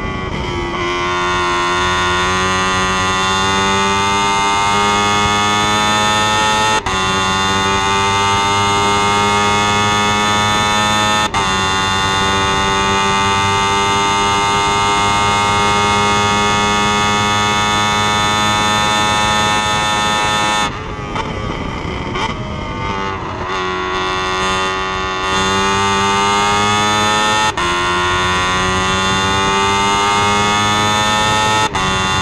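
Onboard sound of a single-seater racing car's engine under full throttle, its pitch climbing steadily through the revs with sharp upshifts about 7 and 11 seconds in. About 21 seconds in it lifts off and downshifts for a corner, then pulls up through the revs again with another upshift near the end.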